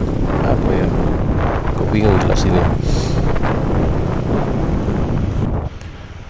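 Wind buffeting the microphone of a moving motorbike, over its engine and road noise. The wind noise drops away sharply near the end.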